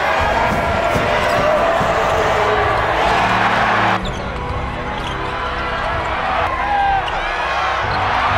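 Basketball game sound on a hardwood court: a ball bouncing against loud arena crowd noise, which drops suddenly at a cut about four seconds in, with music playing underneath.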